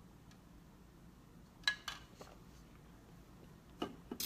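Quiet room tone broken by a few short clicks and knocks as a plastic tumbler with a straw is sipped from and set down on a table: a pair near the middle, the loudest, and another knock near the end.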